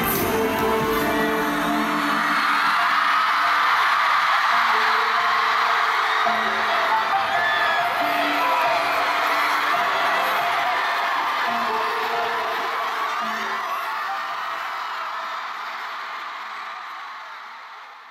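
Live concert crowd screaming and cheering over the closing bars of a pop song. The beat drops out about two seconds in, leaving held keyboard notes, and the whole sound fades out toward the end.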